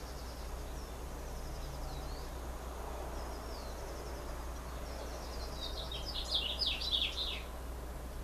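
Birds chirping, with a louder flurry of rapid, quickly falling chirps about six seconds in, over a steady low hum.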